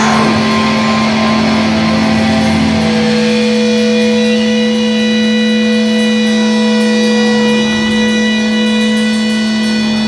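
Amplified electric guitar and bass ringing out in sustained, steady held tones between riffs, a low drone throughout and higher ringing tones coming in about three seconds in, loud and unchanging.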